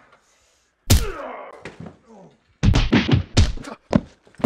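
Blows landing in a staged fistfight: one heavy hit about a second in that rings on briefly, then a quick flurry of five or six thuds near the end.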